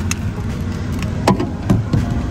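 A steady low rumble inside a parked car, with a few soft knocks from the phone being handled and turned around.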